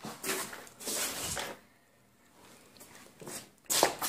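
Three short bursts of rustling and scuffing, the loudest near the end.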